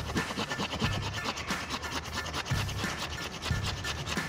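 Hand pruning saw cutting through a thick branch of a Vitex parviflora (tugas) tree in repeated back-and-forth strokes, the teeth grinding through the wood.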